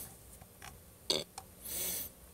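A pause in a man's talk filled with a few short mouth clicks and lip smacks, the loudest a little over a second in, then a faint breath near the end.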